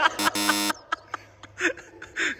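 Game-show style wrong-answer buzzer sound effect: a short blip followed by a harsh buzz of about half a second that cuts off abruptly, marking a missed shot.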